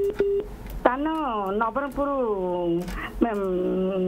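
A caller's voice over a telephone line, thin and cut off at the top, speaking in two long drawn-out phrases with gliding pitch. A short steady beep sounds at the very start.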